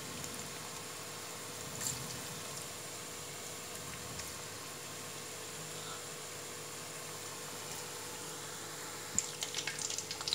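Battered cauliflower pieces deep-frying in hot oil in an aluminium kadai, a steady sizzling hiss of bubbling oil. A few sharp crackles and clicks come in near the end.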